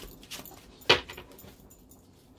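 Oracle cards being handled on a table: a few light clicks, then one sharp knock about a second in.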